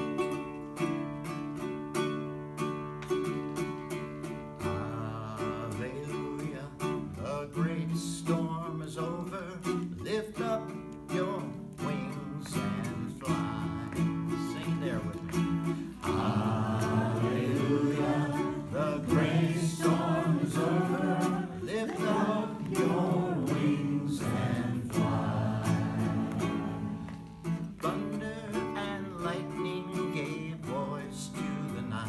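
A ukulele strummed in steady chords, playing a folk spiritual, with a man's singing voice joining over it a few seconds in.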